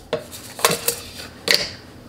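Clear plastic storage canister and its lid knocking and clacking on a granite countertop as they are handled, a few sharp knocks, the loudest about a second and a half in.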